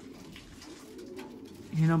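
Racing pigeons cooing softly in a loft, a low steady murmur. A man's voice starts talking near the end.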